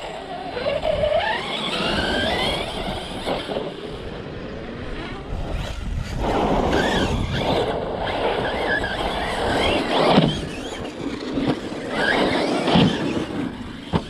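Team Corally Kronos XTR 6S brushless RC truck being driven hard over dirt and grass: the motor's whine rises and falls with the throttle over tyre and dirt noise.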